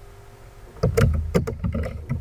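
Computer keyboard keystrokes close to the microphone: a quick run of sharp clicks with low thuds, starting about a second in, as a few characters are typed.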